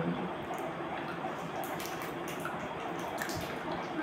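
A person chewing a piece of chocolate: a few faint, wet mouth clicks over a steady background hiss.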